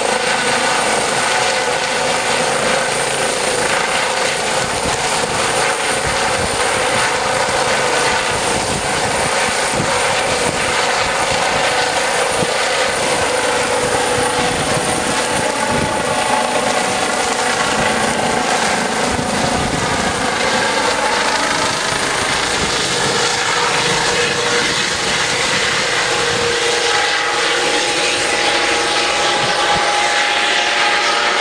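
Eurocopter EC 135 twin-turbine police helicopter with a shrouded Fenestron tail rotor, running at flight power as it lifts off from the grass, hovers and climbs away. It makes a loud, steady turbine whine over the rotor noise throughout.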